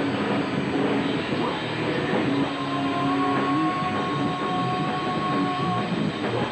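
Live rock band playing loud, with distorted electric guitars and drums and a long held high note through the second half.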